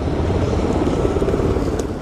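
Armored military vehicles in a convoy driving along a dirt road: a steady rumble of engines and tyres on gravel.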